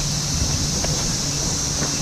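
Vehicle rolling slowly along a wet street: a steady low road rumble under a constant high hiss, with wind noise on the microphone.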